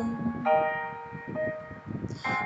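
Backing music between sung lines: a held sung note ends about half a second in, then a bell-like keyboard chord rings and slowly fades, with one more note about a second and a half in.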